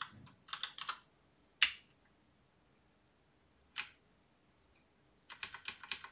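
Computer keyboard keys being pressed: a short run of clicks at the start, single keystrokes at about a second and a half and near four seconds, and a quick run of presses near the end.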